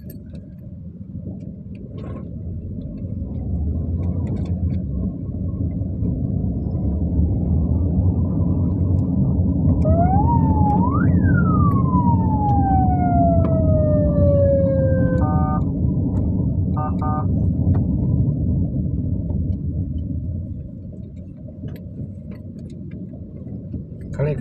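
Car driving through city traffic, heard from inside the cabin: a steady low engine and road rumble that swells in the middle. About ten seconds in, a siren wail rises and then falls slowly over about four seconds, followed by short horn beeps.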